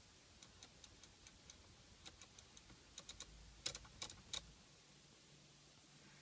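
BMW iDrive rotary controller clicking as it is worked: a run of faint, evenly spaced clicks, then a few louder clicks a little past halfway.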